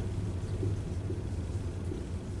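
Steady low background rumble of room tone, with no speech.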